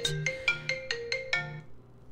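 Phone alert tone: a quick run of about eight chiming notes that ends about one and a half seconds in.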